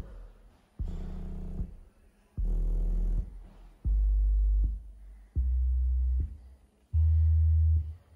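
NEXO RS subwoofers playing end-of-line acoustic test tones: short low bursts under a second long, about one every second and a half, each at a different low pitch. The test compares each cabinet's output against its design specification for a pass or fail.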